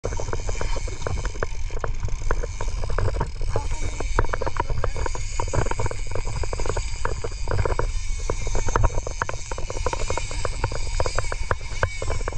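Big-game lever-drag fishing reel giving line as a hooked marlin pulls drag, a rapid, irregular clicking over a steady low rush of wind and boat noise.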